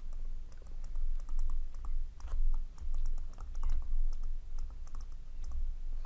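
Digital stylus tapping and scratching on a tablet while a word is handwritten: a run of small, irregular clicks over a low steady hum.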